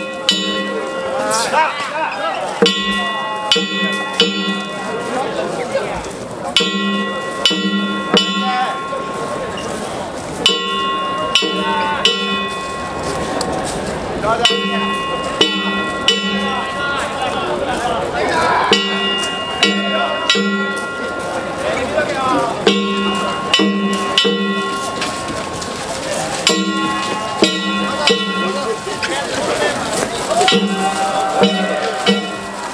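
Danjiri float's festival percussion (narimono): hand-struck gongs and drums playing quick groups of about four ringing strikes, the pattern repeating about every four seconds, with voices shouting between the groups.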